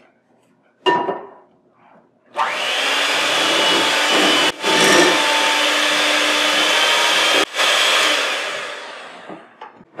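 Electric hand mixer starting about two seconds in and running steadily on medium speed, its beaters working pound-cake batter in a glass bowl until it is fluffy. The noise breaks off briefly twice and fades away near the end.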